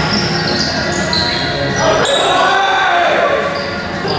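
A basketball being played on a gym's hardwood court, with the ball bouncing and sneakers squeaking in short high-pitched chirps. The hall echoes, and a voice calls out about halfway through.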